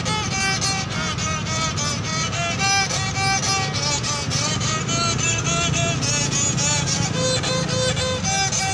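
Small wooden fiddle bowed solo, playing a quick melody of short notes that change several times a second, over a low steady rumble.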